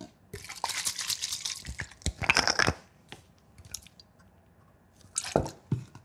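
A cloth wrapped around the fingers rubbing leather cleaner over a leather shoe's upper to lift old cream and wax, a wet, rubbing sound in two stretches of about a second each. After a pause, a few short sharp sounds come near the end.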